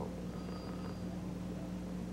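A steady low electrical hum with a faint hiss on a broadcast audio feed, with no other distinct sound.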